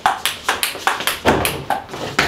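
A small ball thrown against a wall and bouncing back: a quick run of sharp taps, about four or five a second.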